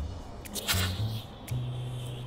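Background music with a bass line. About half a second in comes a short burst of hissing as a handheld smoke bomb ignites and starts pouring out smoke.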